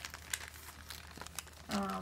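Plastic packaging crinkling in short, scattered crackles as it is handled. A brief voiced hum comes near the end.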